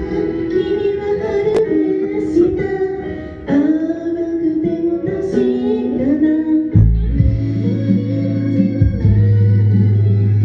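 Female idol group singing a pop song live over instrumental accompaniment. A strong bass line comes in about seven seconds in.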